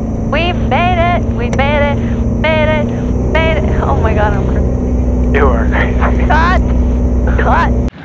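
Kitfox light aircraft's propeller engine running steadily under voices, heard from the open cockpit as the plane sits on the runway, with a deeper rumble building from about three seconds in. The sound cuts off abruptly just before the end.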